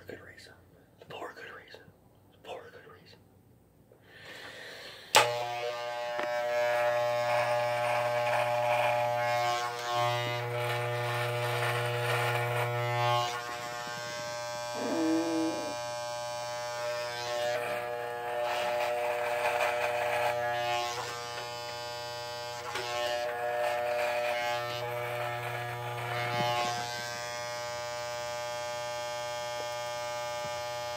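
An electric razor switches on with a sharp click about five seconds in and runs with a steady buzz, its sound rising and falling in strength as it is worked over the chin and cuts off facial hair.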